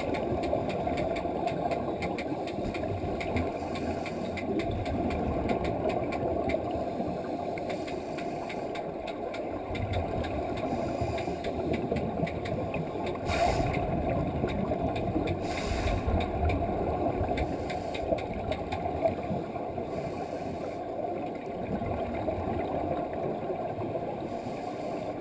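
Underwater sound of a scuba diver's exhaled air bubbling out while his regulator is out of his mouth, over a steady low drone of the pool water, with many small clicks. Two brief louder surges come a little past halfway.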